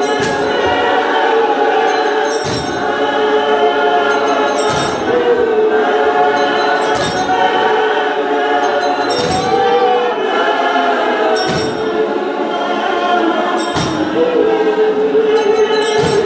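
Large women's choir singing a Xhosa hymn, voices held in long gliding lines, with a sharp beat struck about every two seconds keeping time.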